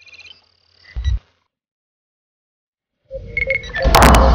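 Electronic interface sound effects: a short cluster of high beeps, a low thud about a second in, then a gap. From about three seconds in comes another run of electronic tones that ends in a loud, sharp hit, the cue stick striking the cue ball.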